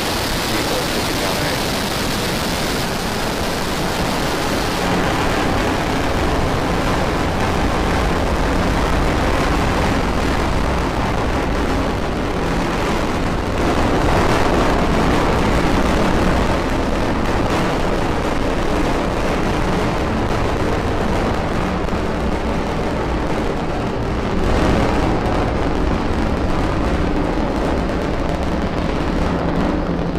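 Falcon 9 first stage's nine Merlin 1D engines firing during ascent just after liftoff. It is a loud, continuous, deep rocket noise whose high end fades after about five seconds as the rocket climbs away.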